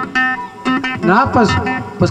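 A live band playing, with a strummed acoustic guitar, and a voice rising and falling over the music in the second half.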